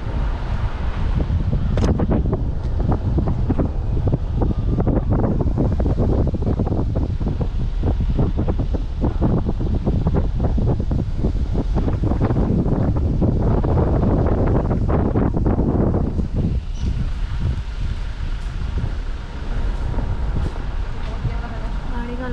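A car driving slowly, its rumble mixed with wind buffeting the microphone. The noise is loud and steady, easing somewhat for the last few seconds.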